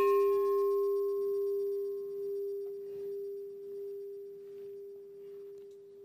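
A large hanging memorial bell struck once, ringing with one deep steady tone and fainter high overtones that slowly fade away.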